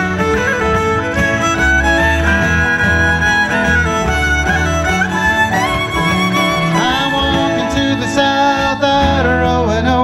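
Live acoustic folk band playing an instrumental break, the fiddle carrying a sliding melody over strummed acoustic guitar, banjo and bodhrán.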